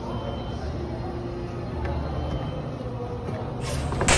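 Steady low rumble of a shopping mall's indoor background noise, with faint distant voices. A louder short burst of noise comes near the end.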